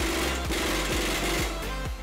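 Impact wrench hammering as it runs the front axle nut onto the hub, stopping about one and a half seconds in. Background music plays underneath.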